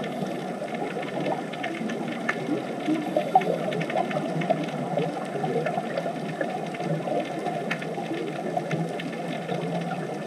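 Underwater ambience: a steady, dense bubbling crackle, low and dull, with faint sharp clicks scattered through it.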